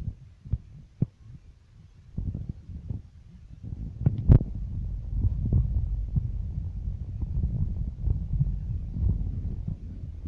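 Low, throbbing rumble inside a vehicle's cabin as it drives through deep flood water in heavy rain. The rumble thickens about four seconds in, with a few sharp knocks, the loudest just after that.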